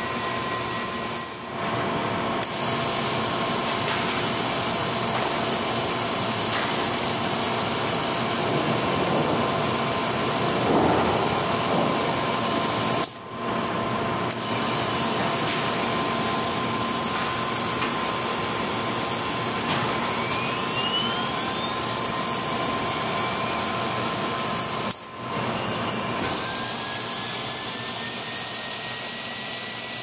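Bryant high-speed spindle running on the test bench during its final run-off test: a steady hiss with a thin, high whine, like a dental drill, dropping out briefly around a second in, about halfway through and again near the end.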